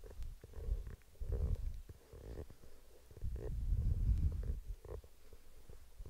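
Low, uneven rumbling and rubbing on a head-worn microphone as the wearer rolls her shoulders in a fleece jacket, swelling longest a little past the middle.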